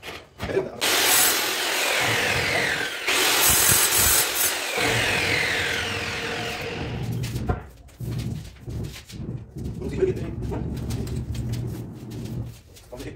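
A heavy black granite countertop slab scraping across the cabinet top as it is pushed into place against the neighbouring slab: a loud rasping rub in two long pushes, the first about a second in and the second from about three seconds. Quieter knocks and handling follow once it is in place.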